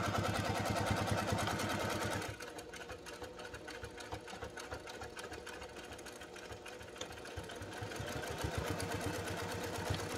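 Brother electric sewing machine stitching through layered fabric, a fast run of needle strokes for the first two seconds, then slowing and quieter, and picking up speed again toward the end.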